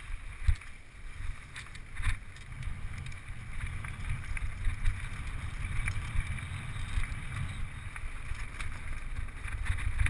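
Wind rumbling on an action camera's microphone as a mountain bike rides over a dirt track, with scattered knocks and rattles from the bike going over bumps; the sharpest knock comes about half a second in.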